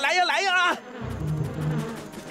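A man's loud wavering shout, then, about a second in, a swarm of bees starts a steady low buzz, stirred up from the beehive he is holding.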